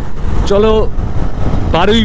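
Riding noise from a KTM Duke 200 motorcycle on the move: wind rushing over the microphone over the single-cylinder engine running, a steady low rumble with no change in pace.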